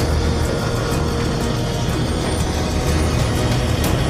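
Animated spacecraft's thrusters rumbling steadily, a cartoon sound effect, under dramatic orchestral music.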